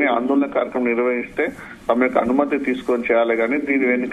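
A man speaking continuously, with the narrow, muffled sound of a telephone line.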